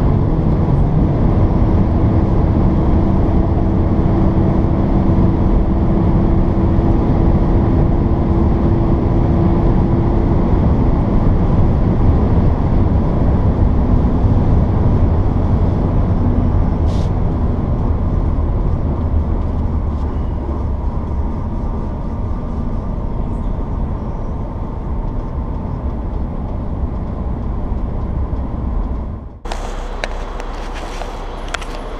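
Cabin noise of a Volkswagen Golf Mk7 1.6 TDI at highway speed: a steady low drone of engine and tyre-road rumble. It grows slightly quieter in the second half, then breaks off abruptly near the end.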